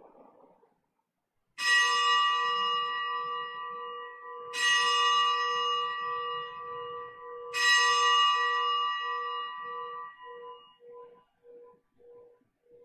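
A bell struck three times, about three seconds apart, each stroke ringing out and dying away. The last stroke fades with a slow wobble. It is rung at the elevation of the consecrated host during the Eucharistic prayer of Mass.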